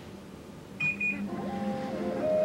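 Window air conditioner beeping once in a double pulse as it takes a command from its remote, just under a second in. A steady hum of several low tones follows.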